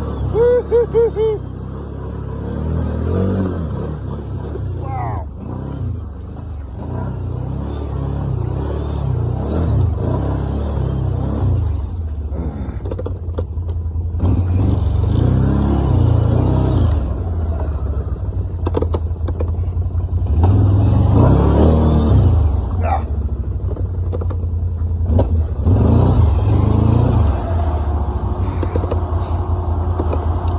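Can-Am 1000 ATV's V-twin engine running under changing throttle while it crawls through rough woodland trail, its note rising and falling and loudest about two-thirds of the way through.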